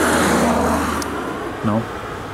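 A car passing close by, its tyre and engine noise fading away over the first second and a half.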